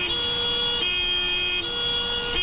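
Two-tone emergency vehicle siren sounding its alternating high and low notes, each held for just under a second.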